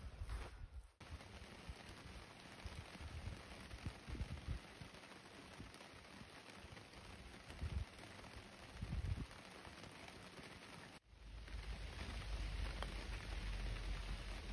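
Wind gusting on the microphone in uneven deep rumbles over a faint steady hiss of light rain; the wind rumble grows steadier and louder near the end.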